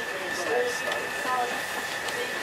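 Train running noise heard from inside the saloon of a 1908 GWR steam rail motor, with a steady high whine throughout and passengers talking over it.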